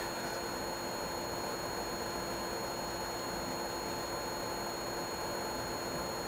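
Room tone: a steady hiss with a faint constant hum, and no distinct sound over it.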